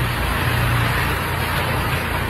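Steady background hiss with a low hum underneath, even in level throughout.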